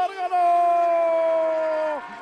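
A race commentator's long, drawn-out shout on one held vowel, the end of "ganar", calling the race winner. There is a short break just after the start, then the shout holds steady, sinks slightly in pitch and cuts off near the end.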